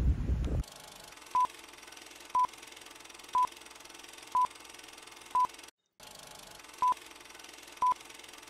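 Countdown-timer beeps: short, identical single-pitch electronic beeps, one a second, seven in all, with a short gap of silence between the fifth and sixth. The first half-second holds a loud rumbling noise that cuts off abruptly.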